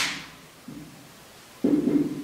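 A man's voice trailing off, then a short, low, drawn-out voiced sound near the end.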